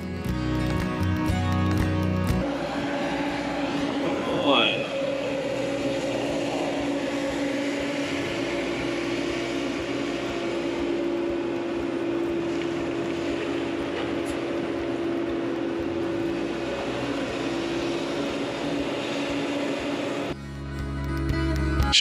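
Walking excavator's diesel engine and hydraulics running steadily at work on a soil pile, a constant drone, with one brief rising squeal a few seconds in. Background music plays briefly at the start and again near the end.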